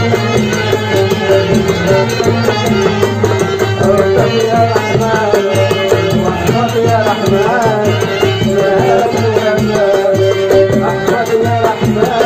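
An oud and a violin playing a traditional Algerian folk tune together, with a wavering, ornamented violin melody over a steady rhythmic accompaniment.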